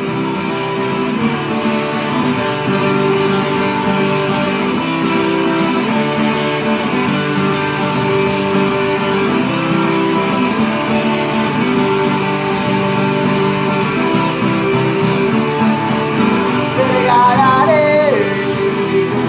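Acoustic guitar strummed steadily in an instrumental passage between verses. A man's singing voice comes back in near the end.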